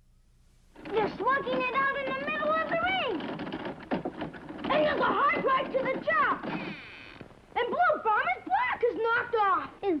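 Excited, high-pitched children's voices shouting and calling out, starting about a second in, with a few short knocks underneath.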